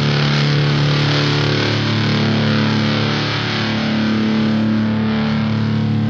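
Heavy metal music from the band's album: distorted electric guitar holding low, sustained chords, moving to another chord about halfway through.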